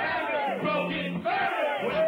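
Crowd and a rapper on a microphone shouting, with loud overlapping yells from several voices.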